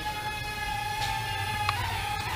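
VK330 micro drone's small brushed motors and propellers whining at one steady high pitch as it flies, the pitch dipping slightly near the end.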